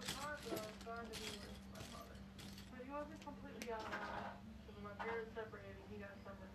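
Loose plastic Lego pieces clicking and rattling against each other as hands sift through a pile of bricks, a sharp click every half second or so. Faint indistinct speech plays in the background.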